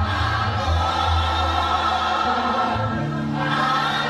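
Live African gospel praise music: voices singing together over a band, with long held bass notes.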